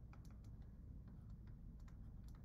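Faint, irregular light clicks and taps from a stylus on a pen tablet while handwriting.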